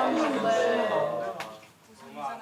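A person's voice, drawn out and pitched like a groan or long vowel rather than clear words, fading out about one and a half seconds in.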